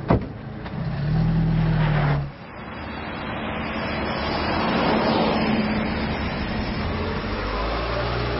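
A car's engine running, heard from inside the cabin with a steady low hum, cut off suddenly a little over two seconds in; then the road noise of a car driving past, swelling to a peak about halfway through and easing off.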